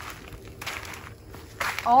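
Footsteps on a mulched garden path, a few soft steps in flip-flops.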